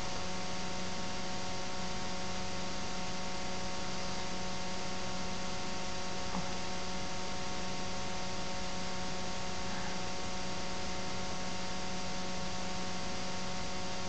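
Steady electrical hum and hiss from the recording itself, with several fixed tones held throughout and no other sound but a faint tick about six seconds in.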